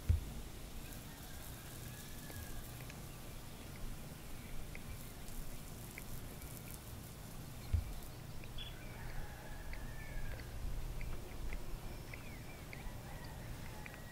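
Outdoor ambience: a steady low rumble with faint, scattered bird chirps, more of them in the second half, and a soft thump about eight seconds in.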